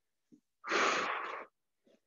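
A man breathing out hard while exercising: one forceful, hissing exhale about half a second in, lasting just under a second, between reverse lunges.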